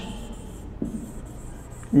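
Pen strokes scratching faintly across the surface of an interactive whiteboard as a word is written, with a single light knock a little under a second in.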